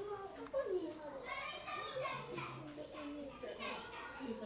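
Children's voices and people chattering, talking and calling over one another.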